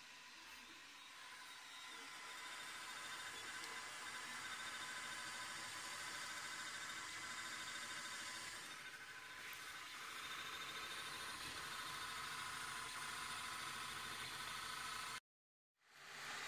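Wanhao Duplicator 4 3D printer running a print, its cooling fans giving a steady whir with a thin high tone running through it. It fades in over the first few seconds and cuts off abruptly near the end.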